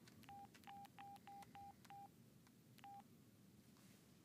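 Mobile phone keypad beeping as a number is dialled: seven short beeps at one pitch, each with a faint key click. Six come in quick succession, then one more after a pause of about a second.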